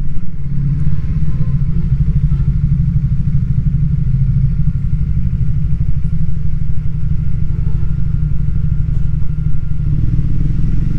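Triumph Speed 400's single-cylinder engine running at low revs as the bike rolls slowly, a steady low pulsing with no revving.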